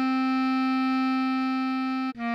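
Bass clarinet holding a single long note, the written D5 of the melody, steady in pitch and level with no break.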